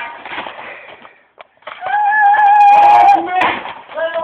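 A person lets out one long, high-pitched yell held on a steady pitch for nearly two seconds, starting about halfway through, after a second of rustling noise.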